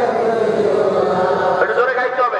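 A man's voice chanting in long, held, melodic phrases into a microphone: the sung delivery of a Bengali Islamic sermon (waz).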